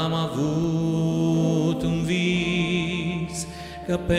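A man and a woman singing a slow Christian song as a duet, with Casio Celviano digital piano and electric guitar accompaniment. The voices hold long notes, and a new held note with vibrato begins about two seconds in.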